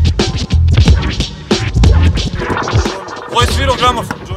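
Hip hop instrumental break: a beat with a heavy kick drum and turntable scratching, with a quick run of scratches near the end.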